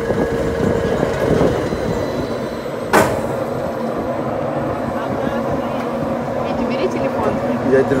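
Steady rushing rumble of an amusement-park ride car in motion, with wind on the microphone and one sharp knock about three seconds in.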